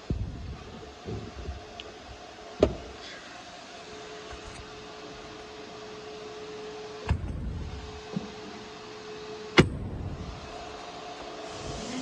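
Sharp knocks and clunks from handling the Jeep Wrangler's rear cargo floor panel and gate area: one about two and a half seconds in, another about seven seconds in, and the loudest near the end. A steady hum runs through the middle and stops with that last clunk.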